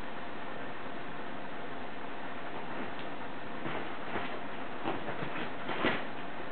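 Soft, irregular taps and thuds of a kitten's paws landing on a padded futon as it runs and pounces, coming in the second half, over a steady background hiss.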